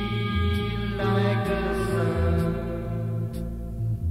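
Blues-rock band recording: a bass line stepping from note to note under a long held, sustained note that dies away about three seconds in.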